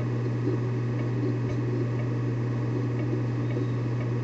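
A steady low hum with a faint even hiss behind it.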